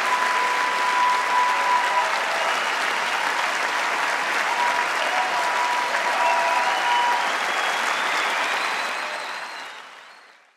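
Large concert-hall audience applauding, with the sound fading out near the end.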